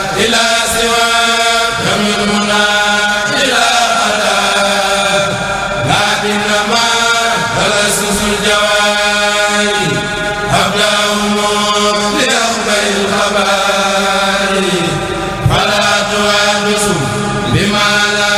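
A Mouride kurel, a group of men's voices, chanting an Arabic qasida in unison without instruments. It comes in long held phrases of a few seconds each that slide between pitches.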